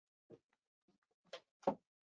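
A few short thumps: a small one about a third of a second in, then two close together about a second and a half in, the last the loudest.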